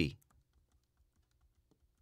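A few faint key clicks on a laptop keyboard, spread over about a second and a half: the Command-D shortcut pressed repeatedly.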